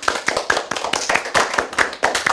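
A small group of children and their teacher clapping: a short round of applause, many quick claps overlapping.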